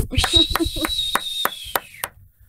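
Hand clapping after an a cappella song, short sharp claps about four or five a second, mixed with laughter.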